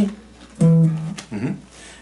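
One low note plucked on a solid-body electric guitar about half a second in, ringing briefly and fading.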